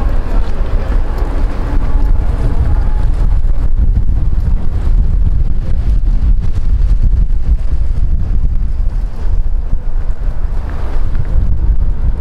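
Wind buffeting the microphone: a loud, steady low rumble. Faint voices are heard in the first few seconds.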